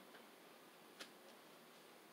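Near silence, with one faint, short click about a second in and a fainter one just after: tarot cards being laid down on the table.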